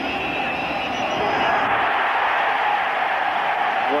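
Stadium crowd noise: a loud, steady din of many voices, with a thin high tone over it for the first second and a half.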